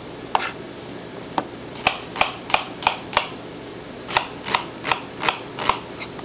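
Chef's knife dicing red onion on a plastic cutting board: sharp knocks of the blade striking the board. Two single strokes come first, then two runs of about three strokes a second with a short pause between.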